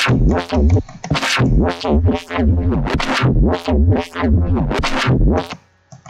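Synthesized neuro-style bass from Harmor playing back in FL Studio, its band-pass filter frequency swept up and down by automation envelopes in a rhythmic pattern, about two sweeps a second. It sounds nasty, and it cuts off shortly before the end.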